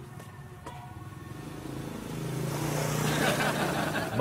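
A passing motor vehicle's engine: a steady low hum that grows louder through the second half, peaking near the end.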